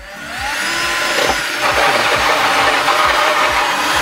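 Cordless drill with a hole saw cutting a round hole through the thin wooden back of a small craft box. The motor whine rises as it spins up, then from about a second and a half in a loud, steady grinding as the saw cuts into the wood.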